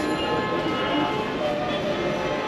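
Busy city street din: a steady noise of traffic and distant voices, with several long held tones running over it.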